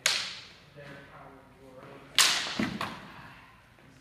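Plastic sparring longswords clacking together: a sharp strike at the start, then another about two seconds later followed by a couple of quicker knocks, each fading out in the hall's echo.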